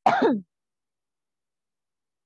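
A woman coughs once, briefly, right at the start; she is suffering from a bad cough.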